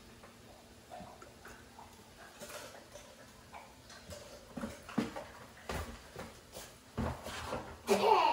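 Quiet kitchen with a few soft clicks and knocks of a metal spoon against a stainless mixing bowl, coming more often in the second half.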